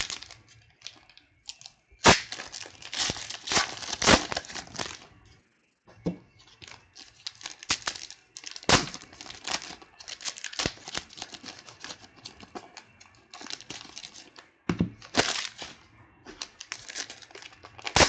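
Foil trading-card pack wrappers being torn open and crinkled by hand, in bursts of crackling with brief pauses between packs.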